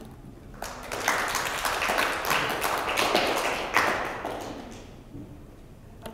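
A small audience applauding: many hands clapping, starting under a second in, then thinning and fading out about five seconds in.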